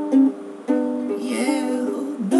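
Ukulele strumming chords in an instrumental passage between sung lines, with a short dip in level about half a second in before the next strum.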